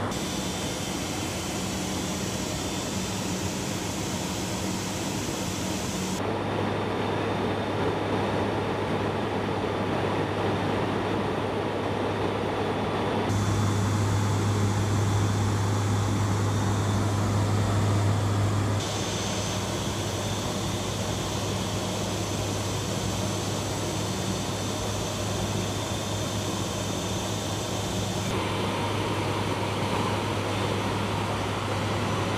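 Steady drone of the HC-130J's four turboprop engines and propellers heard inside the cockpit, with a strong low hum from the propellers. The tone and loudness shift abruptly a few times.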